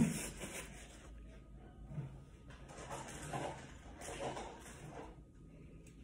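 Faint rustling of a paper towel rubbed over black nitrile gloves as shea butter is wiped off, in a few short soft bursts.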